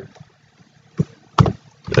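A few sharp clicks of computer keyboard keys being typed, over quiet room tone; they come in the second half.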